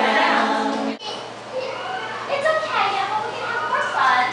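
A song with singing plays for about the first second, then cuts off suddenly; after that, children's voices talk and call out.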